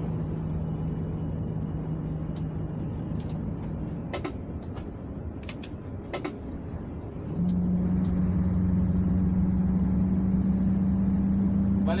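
Mercedes-Benz Actros truck's diesel engine running in the cab while a gear on its 16-speed splitter gearbox fails to engage, with several sharp clicks and knocks from the shift. About seven seconds in the gear goes in and the engine note steps up higher and louder as the truck pulls.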